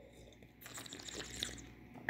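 Faint mouth sounds of a person sipping and swishing red wine, starting about half a second in, with small crackly smacks.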